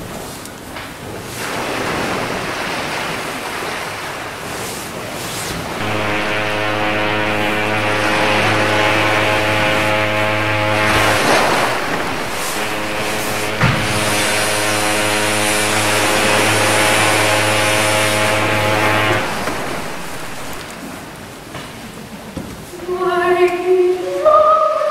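Sound effect of ocean surf, then two long, steady blasts of a ship's horn, each about five to six seconds, with the surf running underneath; it fades away near the end.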